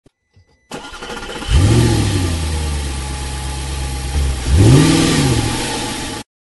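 Car engine starting, catching about a second and a half in and running steadily, then revved once near the end.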